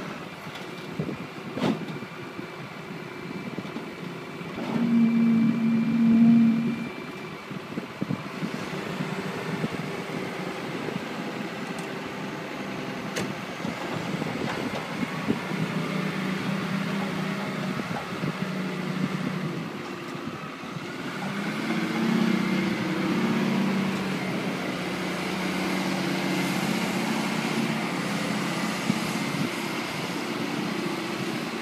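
New Holland LW110 articulated wheel loader's diesel engine running as the machine drives and steers. It grows louder for a couple of seconds about five seconds in, and again from about twenty-one seconds.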